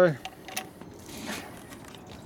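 A few faint clicks and light metallic rattles from a Harley Sportster's handlebar clutch lever being worked by hand to show its free play.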